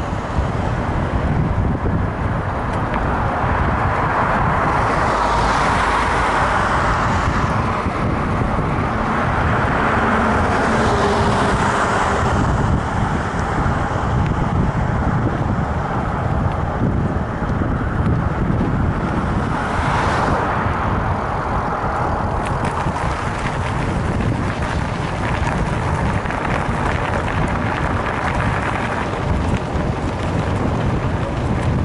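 Wind rushing over a bike-mounted camera's microphone with the rumble of mountain bike tyres rolling on asphalt, swelling several times as cars go by on the road.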